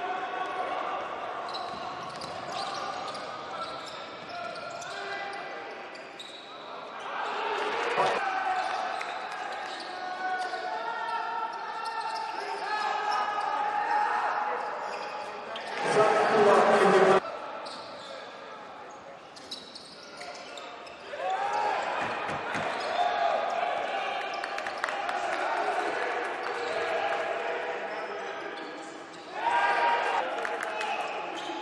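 Basketball game sounds echoing in a large, nearly empty arena: the ball bouncing on the hardwood court while players and coaches call out. There is a louder burst about sixteen seconds in that lasts about a second.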